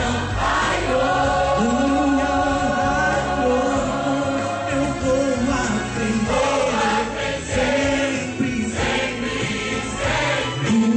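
A church choir singing a gospel song over instrumental accompaniment, with a male lead singer on a microphone.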